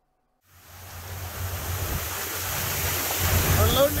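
Wind buffeting the microphone aboard a cabin cruiser under way, over the low, steady hum of its engines; it fades in after about half a second of silence.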